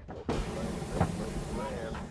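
Hot air balloon's propane burner firing overhead: a loud, steady rush of flame noise that starts abruptly about a third of a second in and runs on for about a second and a half, with voices faintly beneath it.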